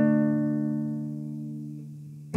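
A chord on a nylon-string classical guitar left ringing and slowly fading, with no new notes struck.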